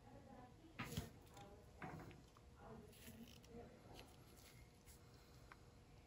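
Near silence with faint handling sounds: gloved hands tipping a paint-covered tile over a plastic tray, with a couple of soft taps about a second in and near two seconds.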